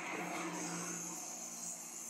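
Faint night-time road ambience: a low hum of distant traffic under a steady high hiss.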